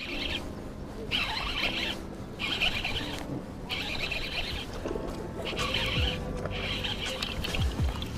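Baitcasting reel being cranked in short bursts, each a high whir under a second long, while a hooked bass is reeled in.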